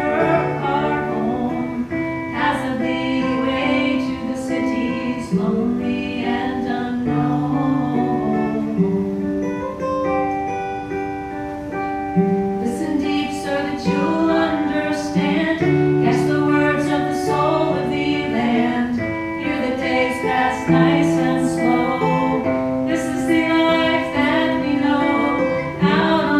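Acoustic guitar strummed and plucked under women's voices singing long, held notes in a slow folk song.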